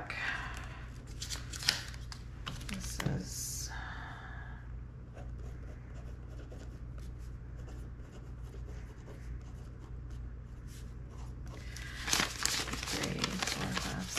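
Paper banknotes rustling and crackling as they are handled and flipped through by hand, with fainter pen scratches on paper in the quieter middle stretch. The loudest rustling comes near the end as a handful of bills is riffled.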